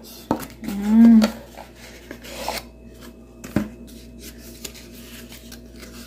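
Cardboard packaging scraping and rustling as glass salt and pepper shakers with metal lids are worked out of their box insert, with small clicks and one sharp knock about three and a half seconds in.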